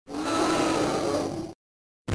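Dinosaur roar sound effect, a rough, growling call about a second and a half long that cuts off suddenly.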